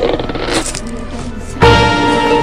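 Dense jumble of overlapping cartoon-clip audio mixed with music. About one and a half seconds in, it gets suddenly louder, with several held tones.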